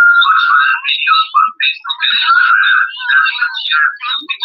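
Thin, tinny, choppy music with a held whining tone near the start, distorted as it comes through a faulty live-stream feed.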